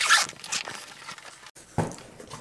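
Zipper of a padded guitar gig bag being pulled open: a quick, loud rasp at the start, then a quieter, scratchy run as the zip travels on.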